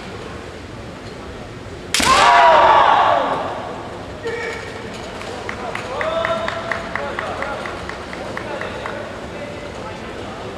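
A bamboo shinai strike about two seconds in, with a loud kiai shout from the fighters that lasts about a second. Later come quieter voices and a steady run of claps, about three a second.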